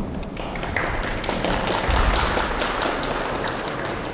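Audience applauding, the clapping thinning out near the end.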